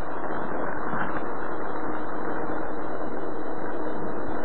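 Steady background hiss with a faint, steady hum underneath: the room tone of the recording, with nothing else happening.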